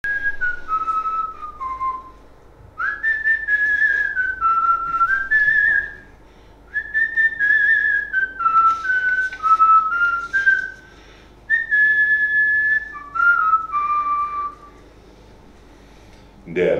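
A person whistling a slow tune in four phrases with short pauses between them, the notes held steady and stepping up and down.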